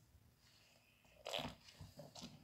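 Hands squeezing and kneading a crumbly flour-and-water playdough mix in a stainless steel bowl: faint, with one brief crunchy squish a little past halfway and a few softer ones near the end.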